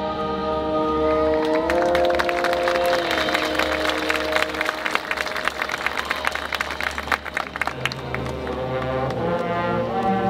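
Marching band playing. Held brass chords step up in pitch about two seconds in, then give way to a long run of rapid percussion strikes. Brass chords with low bass notes return near the end.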